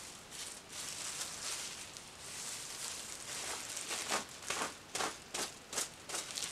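A comb being pulled through bleach-coated hair. It makes a faint rustling scrape with each stroke, and a quick run of strokes comes in the last two seconds.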